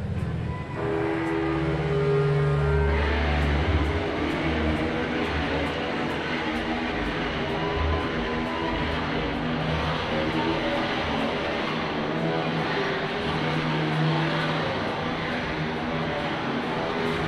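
Rock band playing live as a song starts: the music comes in about a second in, and the full band joins about three seconds in, staying loud and dense.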